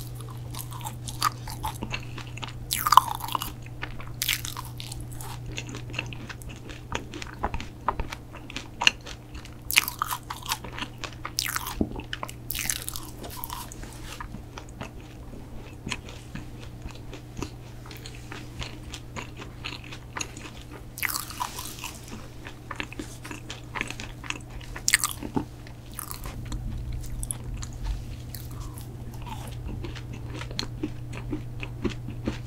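Close-miked chewing of soft-baked protein cookies: bites, crumbly crunches and wet mouth sounds come irregularly, with a few louder crunches scattered through.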